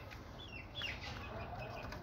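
Caged small birds giving a few faint short chirps, mostly around the middle.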